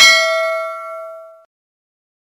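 Single bell-chime ding, the sound effect of a subscribe animation's notification bell being clicked. It starts loud and rings out, dying away within about a second and a half.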